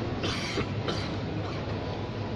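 Steady background din of a busy indoor mall space, with a low hum and two brief hissing bursts about a quarter second and a second in.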